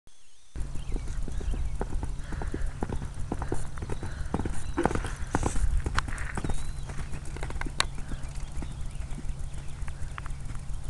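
Hoofbeats of a horse ridden around a sand arena, a run of short, irregular dull knocks, over a steady low rumble.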